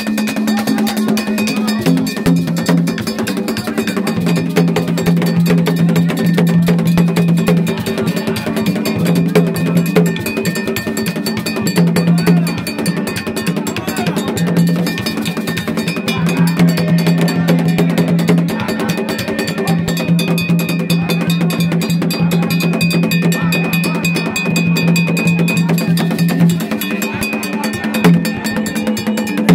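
Gagá percussion playing: hand drums with a fast metallic clanking beat, over low held notes that sound in long stretches.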